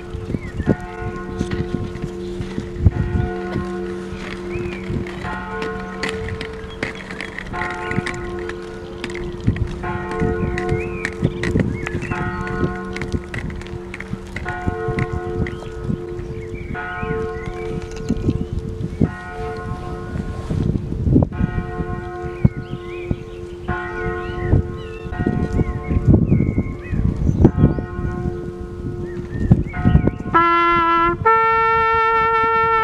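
Church bells tolling, a stroke about every second, each ringing on over a steady lower hum.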